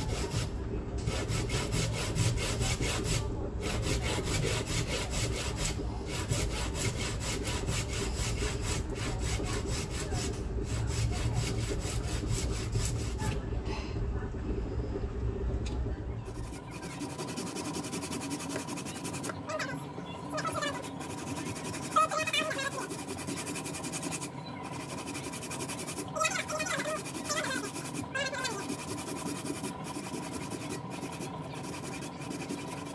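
Cassava being rubbed up and down a long stainless-steel hand grater in quick, steady rasping strokes. About halfway through a low background hum drops out, and a faint voice and a steady tone come in behind the continuing scraping.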